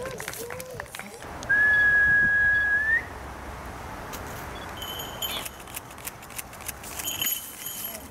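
One long, steady whistled note of about a second and a half, rising in pitch at its end, followed later by a few short, high chirps.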